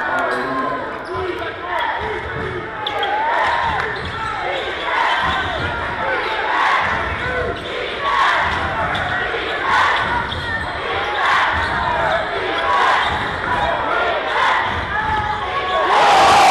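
A basketball being dribbled on a hardwood gym floor, heard as repeated low thumps under the steady talking and shouting of a large crowd of spectators.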